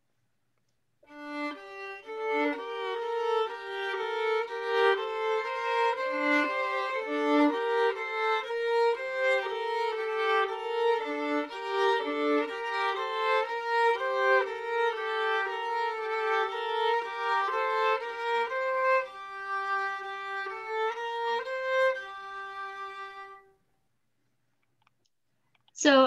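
Playback of a short two-voice musical canon in G minor: one simple, relatively stepwise pattern played against itself with the second voice delayed by half a beat, so the two lines interlock and crisscross in a tight register. It starts about a second in and stops a couple of seconds before the end.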